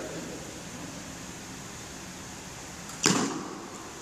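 A single sharp crack of a badminton racket striking a shuttlecock, about three seconds in, with a short echo dying away in the hall.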